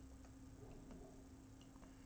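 Near silence: a steady low hum with a few faint, irregular clicks from the computer's pointing device as brush strokes are painted.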